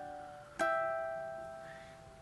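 Ukulele harmonics: a bell-like two-note harmonic is plucked about half a second in and rings out, slowly fading, over the tail of the previous one.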